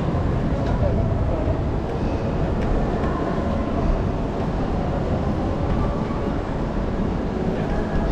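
Busy city street ambience: a steady low rumble of traffic and crowd, with passersby's voices faintly mixed in.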